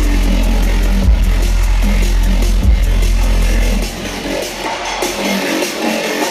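Dubstep played live over a concert sound system, heard from the crowd: a heavy sustained bass with two hard hits, then the bass cuts out about four seconds in, leaving lighter, quieter music.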